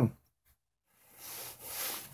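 A moment of dead silence, then a soft, even hiss for the last second or so.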